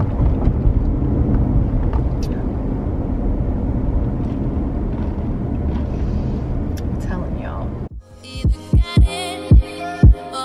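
Steady low rumble of road and engine noise inside a moving car's cabin. About eight seconds in it cuts off and music with a heavy, punchy bass beat begins, louder than the rumble.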